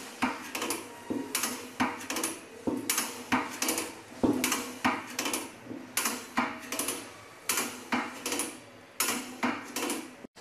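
Manual band-saw tooth setter being worked by its hand lever: a steady run of sharp metallic clacks, about two to three a second, as the lever is pressed to bend the teeth and brought back to move the blade on to the next teeth.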